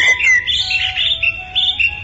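A chorus of small birds chirping and tweeting in quick, overlapping calls, over a low steady rumble of background ambience.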